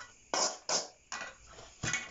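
A metal spoon scraping and scooping through loose potting soil in a basin: three short scrapes, then a sharper scrape or knock against the basin near the end.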